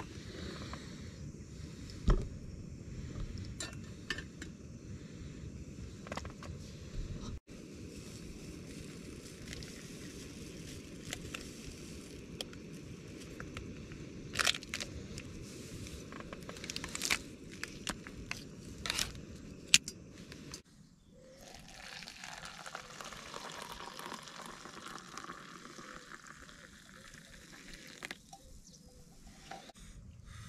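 Sharp metal clinks from a titanium camping pot, its lid and a mug being handled at a gas-canister stove, over a low rumble. Later comes a smooth hiss lasting several seconds as hot water is poured from the pot into the titanium mug.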